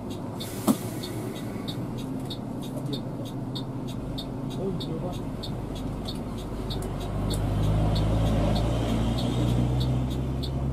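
Coach engine running, heard from inside the cab, its low rumble growing louder in the second half. A light, even ticking about three times a second runs over it, with one sharp click under a second in.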